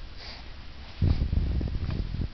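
A baby sniffing in short breaths through a scrunched-up nose, followed about halfway through by a louder low rumble.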